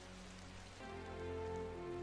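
Film soundtrack: faint rain over a low steady hum, then music of held, sustained chords comes in about a second in and swells.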